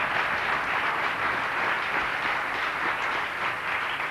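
Audience applauding, a steady round of clapping from a hall full of people.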